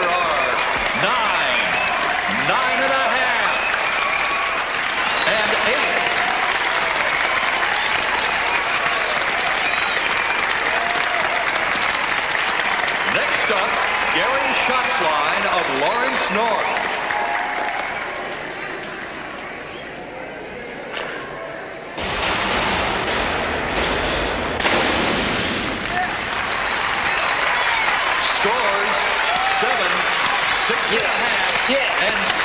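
A crowd of spectators cheering, shouting and applauding. The noise dies down about two-thirds of the way through, then breaks out again suddenly a couple of seconds later, with a second surge just after.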